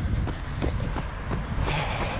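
Wind rumbling on the camera microphone of a runner in motion, with the light regular thuds of his footfalls, about three a second.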